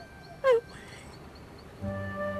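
A woman sobbing: one loud, falling cry about half a second in. Soft held music comes in near the end.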